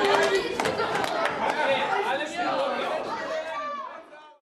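Several young male voices chattering over one another in a hard-walled room, with a few hand claps at the start. It all fades out at the very end.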